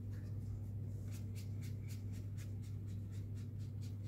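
A paintbrush stroking grey paint onto paper, quick short swishes about four a second, over a steady low electrical hum.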